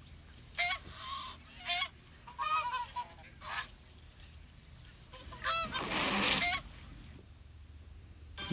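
A run of short, pitched animal calls, about seven of them in little groups, each bending in pitch. A rustling noise runs under the last and longest calls about six seconds in.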